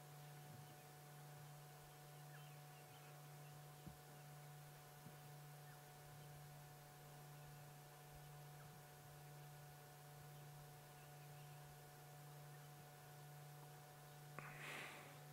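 Near silence: a faint steady electrical hum, with a couple of faint ticks about four and five seconds in.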